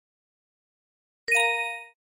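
A single bell-like electronic chime, one sudden ding with several ringing tones, about a second and a quarter in, dying away within about half a second. It is the cue sound of the slideshow as the next word card comes up.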